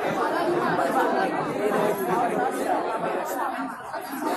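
Crowd chatter: many men's voices talking over one another at once in a large hall, with no drumming or singing.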